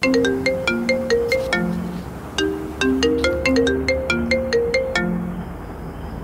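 Mobile phone ringtone: a short, bright melody of plucked notes that plays its phrase twice and stops about five seconds in, as the call is answered.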